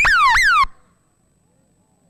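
Electronic sound effect: two quick falling tones, each sweeping sharply down in pitch, lasting about two-thirds of a second at the start and cutting off abruptly. Near silence follows.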